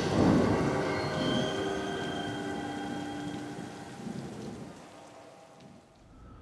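Storm sound effect: a roll of thunder with a rain hiss that swells at the start and then fades away, with a few faint held musical tones over it.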